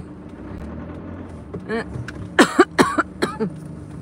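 Low, steady engine and road hum inside a car creeping through city traffic. A person coughs three or four times a little past halfway through.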